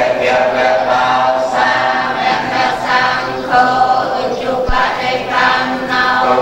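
A congregation of lay Buddhists chanting prayers together in unison, holding steady notes in phrases of a second or two.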